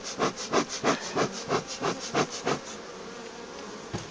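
Bee smoker's bellows pumped in quick puffs, about five a second, stopping a little before three seconds in. Under them is the steady hum of honeybees on the open hive frames.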